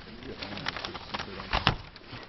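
Handling and movement noise in a large room: a few sharp knocks and clicks, the loudest about a second and a half in, over faint low murmuring voices.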